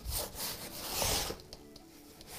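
Paintbrush strokes rubbing across a large stretched canvas: two broad sweeps, a short one at the start and a longer one about a second in.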